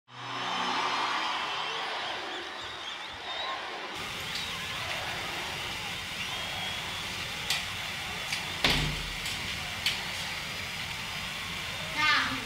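A low hum for the first few seconds, then a steady hiss with a few sharp clicks and one heavier thump about nine seconds in.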